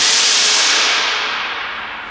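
A sudden loud hiss that starts abruptly and fades away over about two seconds.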